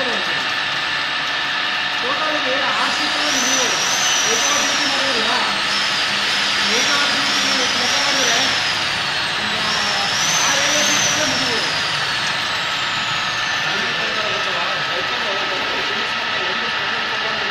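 CNC drilling machine running with a steady hum as its drill bit cuts into a metal ring under coolant. From about three seconds in until about twelve seconds, a high whine rises and falls again and again while the bit cuts.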